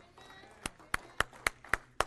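A run of six sharp, evenly spaced taps, nearly four a second, starting about a third of the way in.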